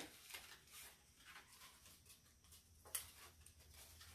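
Near silence with faint rustling of construction paper and tape being handled, and one sharp little click about three seconds in.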